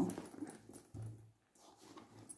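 Faint rustling as a leather handbag is opened out and handled, with one short low sound about a second in.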